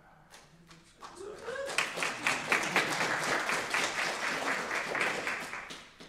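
Audience applauding: dense clapping starts about a second in, carries on steadily, and tails off near the end, with a voice or two mixed in at the start.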